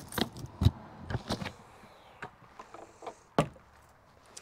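Keys jangling and clicking in the lock of an RV's exterior storage compartment door, with the latch and door then worked open: a series of sharp clicks and knocks.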